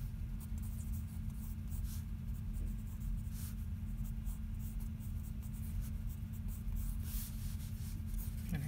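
Pencil scratching on sketchbook paper: short, quick drawing strokes at irregular intervals, over a steady low hum.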